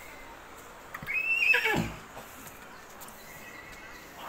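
A Sindhi-breed horse whinnying once, about a second in. The call starts high and falls steeply in pitch over about a second.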